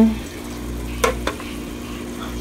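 Ground beef and chopped onions frying with a steady sizzle in a nonstick pot, stirred with a plastic spatula that gives two light knocks against the pot about a second in.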